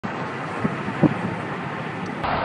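Steady road and engine noise of a moving car heard from inside the cabin, with a couple of light knocks, the sharper one about halfway through.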